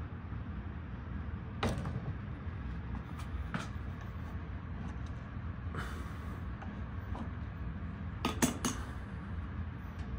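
Steady low hum of a running air handler, with a few sharp metal clicks from an adjustable wrench working the nut off a ball valve's handle, and a quick run of three clicks near the end.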